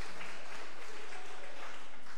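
Congregation applauding, the clapping thinning out near the end.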